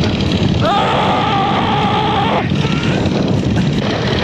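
Heavy wind rush and engine noise on the microphone of a rider on the upper wing of an Antonov An-2 biplane in flight. A voice holds one long steady cry about half a second in, lasting around two seconds.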